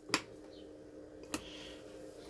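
Two sharp snips about a second apart: wire cutters cutting through the charge controller's wiring.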